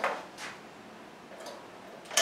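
Quiet room tone with a couple of faint clicks from a mobility scooter's tiller controls as the throttle lever is worked. The seat-lift motor does not run, because the key is not turned fully to the seat-lift position.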